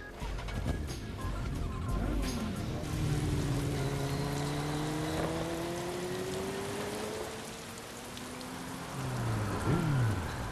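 Film soundtrack of motorcycle engines under a steady hiss, mixed with background music. The engine notes sweep in pitch: a falling swoop about two seconds in, a long slow rising whine through the middle, and another falling swoop near the end.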